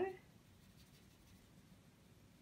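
Faint strokes of a wet paintbrush on paper, blending watercolour-pencil shading.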